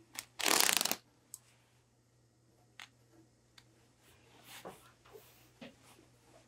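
Seam of a suit jacket ripped apart by hand: one loud tearing burst of rapid-fire thread snaps just under a second long, followed by soft fabric rustling and a few light clicks.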